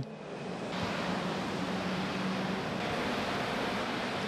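Steady outdoor background noise: an even hiss with no distinct events.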